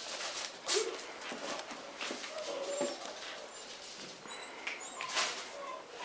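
Domestic cats giving a few short, soft meows, the loudest about a second in.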